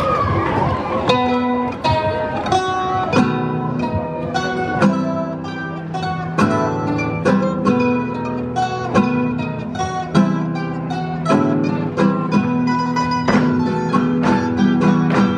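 Spanish folk string band of guitars and other plucked strings striking up a dance tune about a second in, playing clear plucked notes in a steady rhythm. Before it starts there is a brief murmur of crowd noise.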